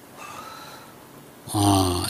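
A man's breath close to the microphone during a pause in his talk. About one and a half seconds in, his voice comes back with a drawn-out syllable at a steady pitch.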